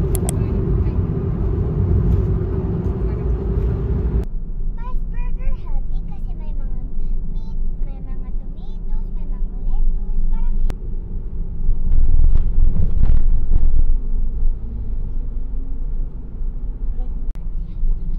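Road noise inside a moving car: a steady low rumble of tyres and engine, hissier in the first four seconds until an abrupt change, with faint voices in the cabin and the rumble swelling for a couple of seconds near the middle.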